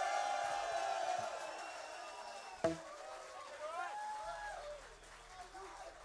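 The last chord of a punk rock song ringing out through the amplifiers and fading away, with a single sharp knock about halfway through. It is followed by scattered shouts and whoops from the crowd.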